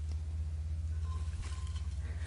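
A low steady hum, with faint rustles and light clicks as a cut dahlia is set into a wire flower frog on a pitcher.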